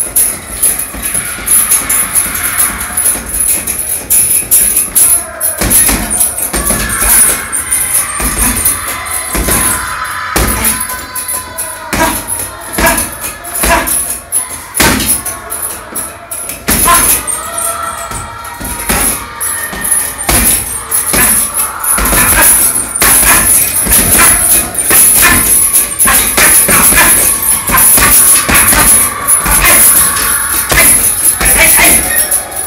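Gloved punches landing on a heavy punching bag at an irregular pace, some in quick flurries, with the bag's hanging chain jingling as it swings.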